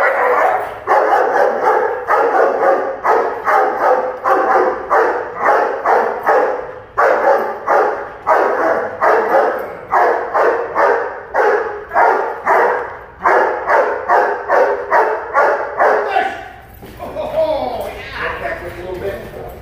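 Young shepherd-type protection dog barking steadily at about two barks a second, aroused and held back on the leash while the decoy wiggles the bite sleeve before the bite is allowed. The barking stops about sixteen and a half seconds in.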